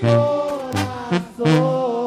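Sinaloan banda music: wind instruments playing held notes over a low tuba bass, with regular drum hits.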